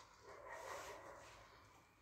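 Near silence: room tone, with a faint brief sound a little under a second in.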